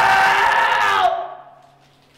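A young man screaming: one long, loud, held scream that breaks off about a second in, leaving a short echo fading away.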